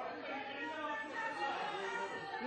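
A hubbub of several voices talking over one another in a large hall, with no single clear speaker.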